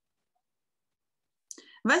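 Dead silence, then about one and a half seconds in a short, faint intake of breath, and a woman starts speaking near the end.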